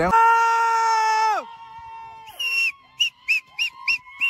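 A long held shout that falls away about a second and a half in, then a run of short, high whistles in quick succession, from people cheering on a kite fight.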